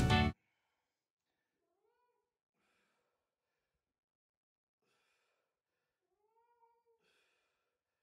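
Background music cuts off at the start, then near silence with two faint cat meows, the second longer, about two seconds in and again near the end.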